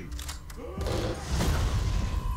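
Action film trailer sound effects: a few sharp gunshots in the first half-second, then a loud explosion that builds through the second half.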